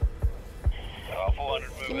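Background music with low, sharp bass beats about every half second to second and a held tone underneath. A voice is briefly heard in the second half.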